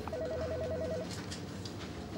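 A telephone ringing: one electronic trill of rapid, even pulses, about ten a second, lasting about a second.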